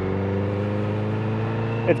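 Honda CBR sport bike's inline-four engine running at steady revs while cruising, its note holding one pitch.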